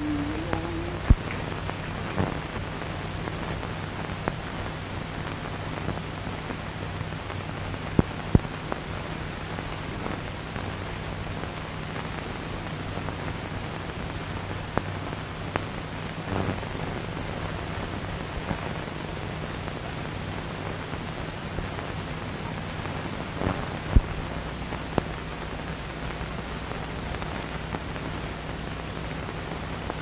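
Steady hiss and low hum of a worn early-1930s optical film soundtrack, with a faint high whine and scattered sharp clicks and pops.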